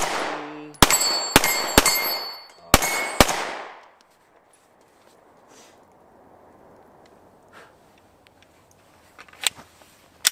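Semi-automatic pistol firing about six shots over the first three and a half seconds, in quick uneven strings, each crack followed by a thin metallic ring. A few light clicks come near the end.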